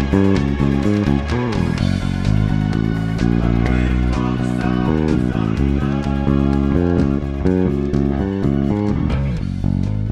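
A new wave band recording with an Aria electric bass played along with it. The fingered bass line runs in steady eighth notes under the band.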